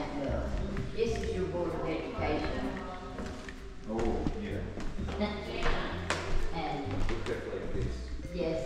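People talking in the room, with music playing underneath the voices.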